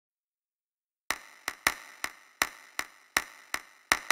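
Percussion intro: about nine sharp clicks in a loose rhythm, starting about a second in after silence.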